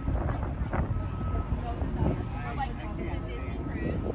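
Wind buffeting the microphone with a low rumble, under the indistinct voices of people talking nearby.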